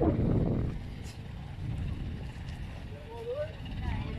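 Steady low rumble aboard a boat at sea, louder in the first second, with faint voices in the last second.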